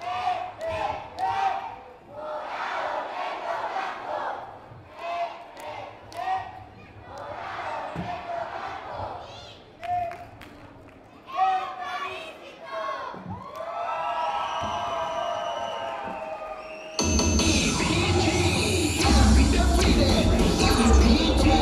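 Young cheerleaders shouting a chant in unison during the routine's cheer section, with the crowd cheering. Near the end, loud routine music with a heavy bass beat cuts in suddenly.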